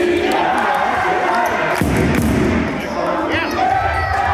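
Basketball being dribbled on an indoor court, with voices calling out in a reverberant sports hall and a brief high squeak about three seconds in.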